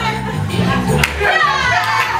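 Music with steady low bass notes, mixed with a group of excited voices shouting and whooping in high rising and falling calls.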